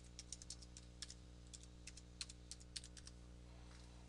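Computer keyboard typing: a quick run of faint keystrokes as a word is typed, stopping about three seconds in, over a low steady hum.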